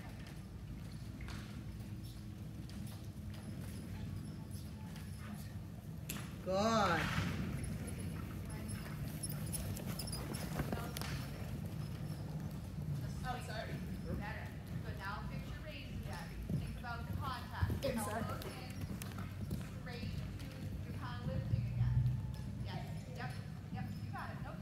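Horses' hooves falling on the sand footing of an indoor riding arena, over a steady low hum. About six seconds in, a horse whinnies once in a short quavering call, the loudest sound here.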